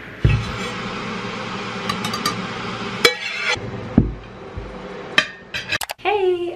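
Objects handled on a wooden table beside a plastic bottle of sparkling water: a steady hiss for the first few seconds, several sharp knocks and clicks, and a heavier thump about four seconds in.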